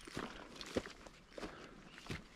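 A hiker's footsteps through dry grass over rocky ground, three steps about 0.6 s apart, each a short crunch with a light rustle of brushed vegetation between.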